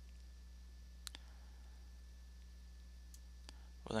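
Faint computer mouse clicks, a close pair about a second in and two single clicks later, over a steady low electrical hum.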